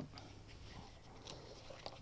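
Quiet, with a few faint light clicks and rustles of gloved hands handling a wire.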